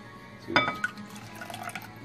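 Cornstarch-and-cold-water slurry being poured from a plastic cup into hot raspberry sauce in a glass bowl, a liquid pour.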